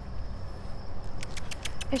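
Night outdoor ambience: a steady low rumble under a thin, steady high insect drone, with a quick run of sharp clicks in the last second.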